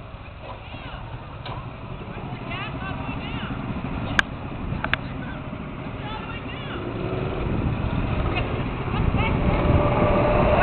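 Go-kart engines running as a low drone that grows steadily louder toward the end as the karts come closer, with two sharp clicks in the middle.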